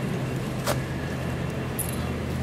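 Steady low hum and rumble of a large convention hall's room noise, heard through the hall's sound system. A single sharp click comes under a second in.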